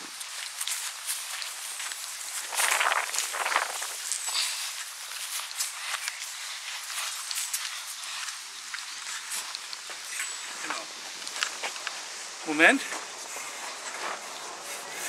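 Footsteps on grass and bare soil with rustling as someone walks through a yard, louder for about a second near the start. A short voice sound comes near the end.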